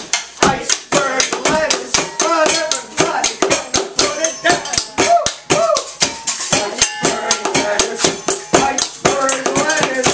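Improvised kitchen percussion: wooden spoons and hands beating on pots, pans and metal bowls in a fast, busy rhythm, several hits a second, with voices singing and calling over it.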